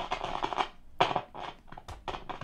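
RGD Rover transistor radio crackling and scratching irregularly through its speaker as its side thumbwheel control is turned. This is the sign of a dodgy contact in the control, which the owner takes for a bad contact or a pot that has fallen apart.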